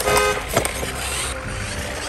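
A short vehicle-horn toot right at the start, then a steady engine-like rumble.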